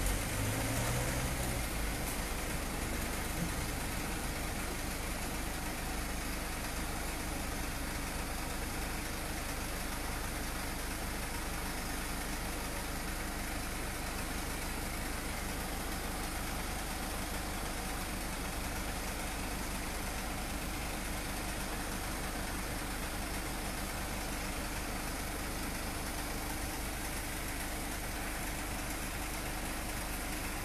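A van engine idling steadily close by, a constant low rumble with no change in speed.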